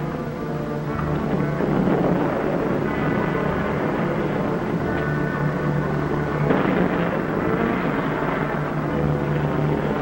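Orchestral film-serial score with a steady car engine running underneath it.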